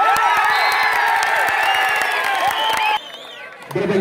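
Large crowd of spectators cheering and shouting, many voices at once during a kabaddi raid and tackle, cutting off abruptly about three seconds in.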